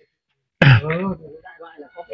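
A man's voice: one short vocal sound with a falling pitch about half a second in, trailing off quietly.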